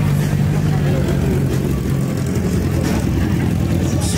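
Sport motorcycle engines running at low revs as the bikes roll slowly past close by, a steady low-pitched engine note.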